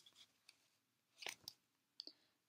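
Near silence: room tone, with two faint short clicks a little past halfway.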